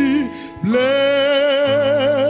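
A song sung in church with long, wavering held notes over a band accompaniment; the voice breaks off briefly about half a second in, then takes up a new long note.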